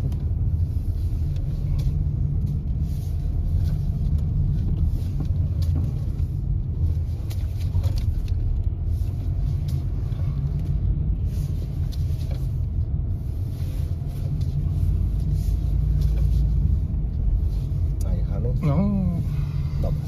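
Steady low rumble of engine and tyre noise heard inside a Renault car's cabin as it is driven through a cone slalom on wet asphalt, growing a little louder about two-thirds of the way in.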